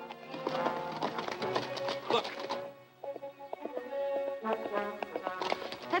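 Orchestral film-score music, with a horse's hoofbeats under it. The music drops away briefly about halfway through, then comes back.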